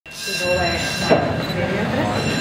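Electric school bell ringing continuously with a steady metallic tone, sounding the earthquake alarm for a drill; voices murmur underneath.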